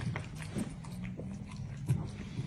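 A dog eating a soft cream dog cake from a plate: irregular chewing and licking smacks, one louder near the end.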